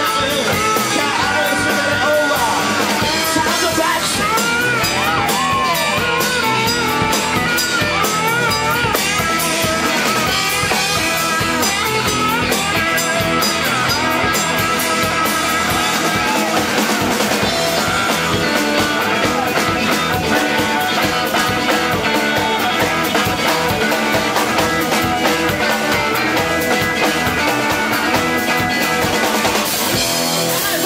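Live blues-rock band playing: electric guitars over bass and a drum kit, loud and steady throughout.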